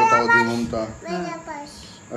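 A voice singing, drawing out held notes for about the first second, then dropping to quieter, broken voice sounds.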